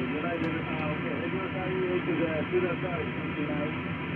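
Icom IC-7300 HF transceiver's speaker carrying a weak single-sideband voice signal, faint speech half-buried in steady receiver hiss. It is received on a 20-meter antenna while the radio is tuned to the 17-meter band.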